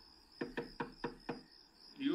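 Rapid knocking on a door: about six quick raps in under a second.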